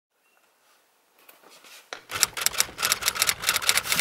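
A handbag being handled and taken off a closet shelf: a quick, irregular run of clicks and rustles that starts about halfway through, after a near-silent opening.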